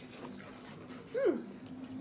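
A woman's short "hmm" while tasting a candy, about a second in, falling steeply in pitch. A faint steady hum lies underneath.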